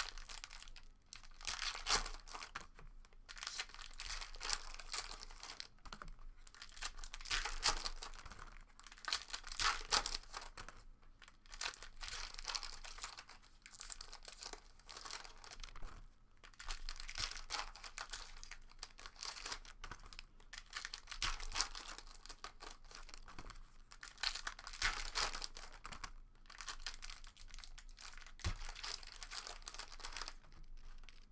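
Foil trading-card pack wrappers being torn open and crinkled by hand, in irregular bursts of rustling with short pauses between.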